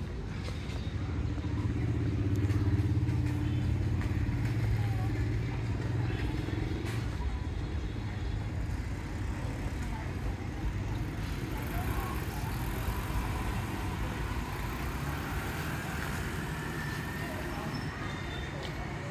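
A car driving past on a wet street: a low engine hum that is loudest from about one to six seconds in, then fades into steady street background with faint distant voices.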